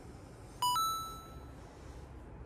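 A short two-note electronic chime: a brief lower note followed at once by a higher note that rings out and fades over about a second, against quiet room tone.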